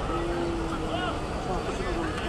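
Outdoor background of distant crowd voices over a steady low rumble, with one steady held tone lasting about a second near the start.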